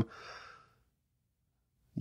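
A man's short, faint breath out, fading within about half a second.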